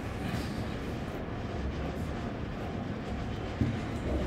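Steady low rumbling background noise, with a single short knock near the end.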